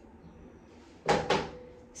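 Two quick sharp snips of long grooming scissors, about a second in and a fifth of a second apart, cutting the excess length off a Gordon setter's fine hock hair.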